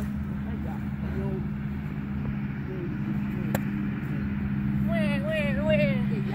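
A steady low motor-vehicle engine hum runs throughout. A single sharp knock comes about three and a half seconds in, and a voice calls faintly near the end.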